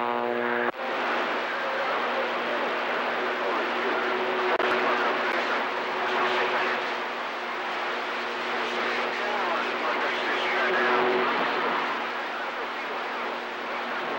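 CB radio receiver hissing with steady static and band noise, starting abruptly just under a second in when the incoming transmission drops off the air.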